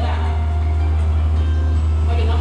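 Music played over a loudspeaker system, under a loud steady low hum.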